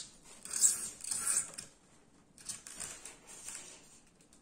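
Soft handling noises: two short rustles or scrapes in the first second and a half, then fainter scattered ones, as a hobby-model dome is lifted off among its wiring.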